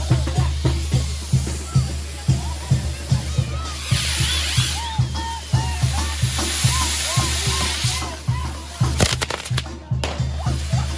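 Live banda music with a steady bass beat, over which a fireworks torito hisses as it sprays sparks in two long stretches. A quick run of sharp cracks comes near the end.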